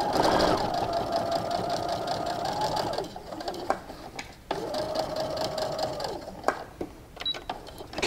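Baby Lock sewing machine top stitching: the motor runs steadily for about three seconds, stops briefly, runs again for about a second and a half, then stops, with a few light clicks in the pauses.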